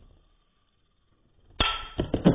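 Metal Beyblade spinning tops clashing in a plastic stadium: one clash fading at the start, then a sharp, loud clash about one and a half seconds in that rings on.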